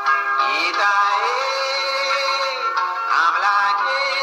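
Music: a melody line, most likely a singing voice, holding long notes that slide up and down between pitches over steady accompaniment.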